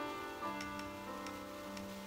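Instrumental church accompaniment for the sung psalm: held chords, with a new chord coming in about half a second in. A few faint light clicks sound over the music.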